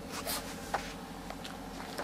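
Faint steady low hum with a few soft rustling handling sounds, the loudest a little after the start.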